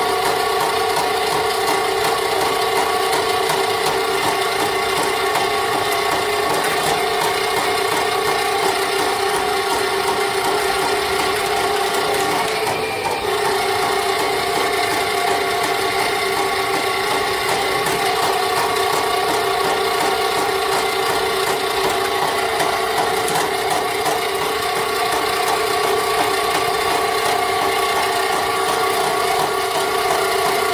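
Electric drum sewer snake running steadily, its motor spinning the steel cable down a sewer line as it chews through a blockage that the operator takes for tree roots. The hum and rattle hold steady, with one brief dip about halfway through.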